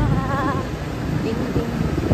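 Low rumble of wind buffeting a moving microphone amid street traffic, with a brief wavering high tone in the first half second.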